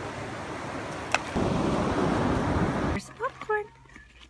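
Rushing water of a shallow, stony creek, with one sharp click a little after a second in. About three seconds in the sound cuts to a quieter room with a low hum and a few brief, faint voice sounds.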